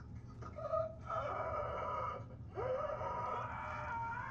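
A man wailing in pain: a short cry, then two long drawn-out wails that rise in pitch at their onset.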